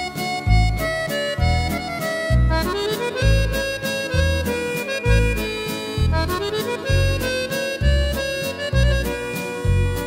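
French waltz played on a Yamaha Tyros 4 arranger keyboard with an accordion voice: a reedy accordion melody over a waltz accompaniment, a low bass note about once a second with short chords between.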